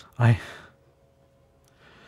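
A man's voice says a faltering "I...", then a soft breath is drawn near the end.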